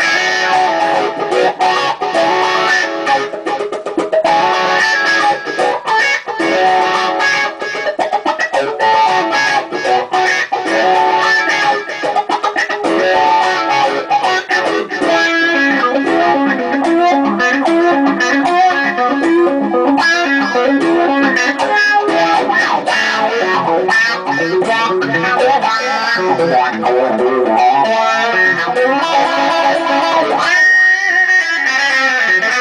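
Electric guitar with a crunch overdrive tone played through a GLAB Wowee Wah WW-1 pedal, set to bass high, deep high and Q factor low, with the wah rocked through its sweep. It plays fast lead runs, turning about halfway through to a lower repeated riff.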